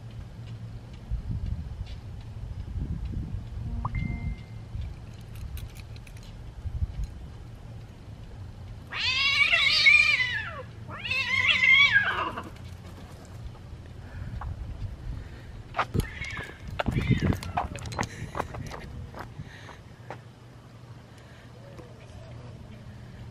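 Two cats squaring off for a fight, with two long, drawn-out yowls about nine and eleven seconds in, each arching up and down in pitch. A scatter of sharp clicks and knocks follows near the end, over a low background rumble.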